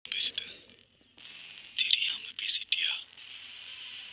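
Faint whispered speech in a few short, hissy bursts, with quiet gaps between them.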